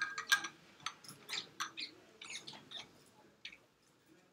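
Classroom room noise while the class is asked for the next step: scattered light clicks and taps, about a dozen at irregular intervals, over a faint low murmur.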